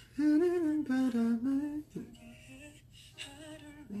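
A single voice humming a slow, gentle melody: one phrase in the first two seconds, a softer stretch, then another phrase starting near the end.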